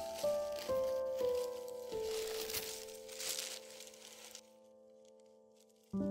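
Soft piano music, its notes stepping downward and then held as it fades out. Over it for the first four seconds or so, tissue paper rustles and crinkles as it is folded back from an old book in an archival box.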